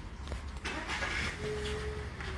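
A motor vehicle going by: a rush of engine and road noise that swells about half a second in and holds, with a faint steady tone over it in the second half.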